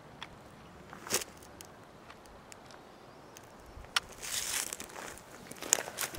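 Camera handling noise: a few sharp clicks, the loudest about a second in, then a short stretch of cloth rustling about four seconds in as the camera brushes against a shirt, over a quiet outdoor background.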